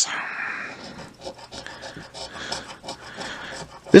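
A coin scratching the silver coating off a scratch-off lottery ticket in a run of short strokes. It is loudest in the first half second, then softer and more broken.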